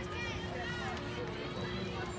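Indistinct chatter of spectators and players at a softball game, steady and without any single loud event, over a faint steady hum.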